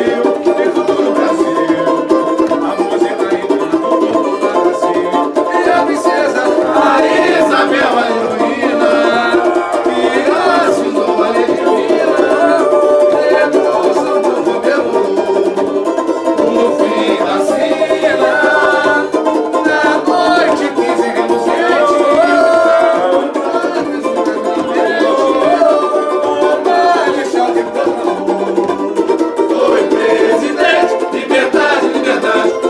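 A group singing samba to strummed samba banjos (short-necked cavaquinho banjos), played continuously.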